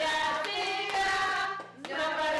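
Several voices singing together with hand-clapping, briefly dropping out near the end.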